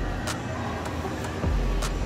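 Background noise of an indoor pool atrium: a low rumble that swells twice, with a couple of sharp clicks and faint scattered tones over it.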